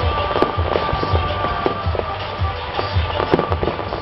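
Fireworks bursting with scattered sharp bangs and crackle, over music with a steady bass beat about twice a second.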